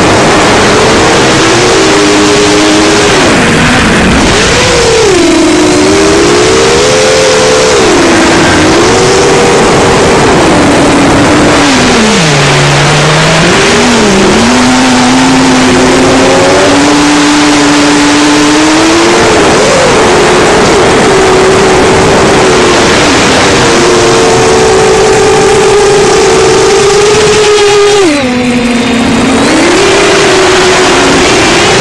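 Brushless motors and 7-inch three-blade props of an FPV quadcopter, heard from the craft itself: a loud, continuous whine whose pitch rises and falls with the throttle. The pitch falls low about twelve seconds in and dips sharply again near the end.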